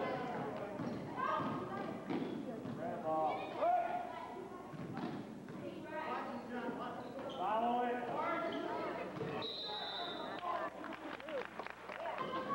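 Basketball game in a gym: the ball bouncing on the hardwood floor amid spectators' voices and shouts, with a short high steady tone about three quarters of the way through.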